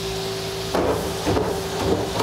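Flour-tortilla burritos sizzling on a hot flat-top griddle as they are set down and pressed onto the plate, over a steady hum.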